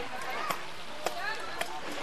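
Sharp knocks, four of them, evenly spaced about twice a second, with people talking around them.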